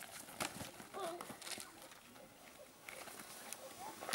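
Boys wrestling on dirt ground: scuffling feet, clothing rubbing and bodies tumbling, heard as a run of short knocks and scrapes, with a few faint voices in the first second or so.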